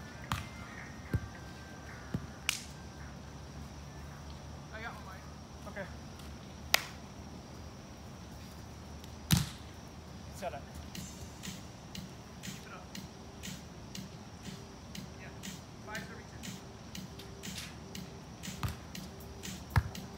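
Volleyball struck by players' hands: sharp, scattered slaps, the loudest about nine seconds in and another near seven, with faint voices between them.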